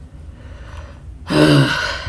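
A woman's breathy voiced breath, a sigh-like sound lasting about half a second and falling in pitch, starting just over a second in.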